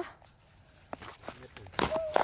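Footsteps and dry mangrove twigs and branches crackling as people push through dense brush, faint scattered cracks from about a second in and a louder sharp snap near the end.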